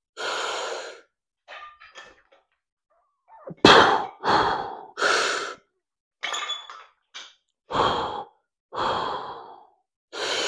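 A man's hard, effortful breathing while straining through a set of heavy dumbbell curls: about eight forceful breaths in and out, the loudest a quick run of three near the middle.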